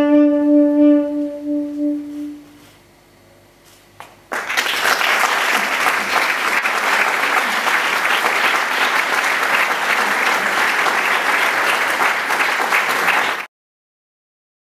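Tenor saxophone holding a long final note that fades away over about two and a half seconds. After a short hush, audience applause breaks out about four seconds in and runs steadily until it is cut off abruptly near the end.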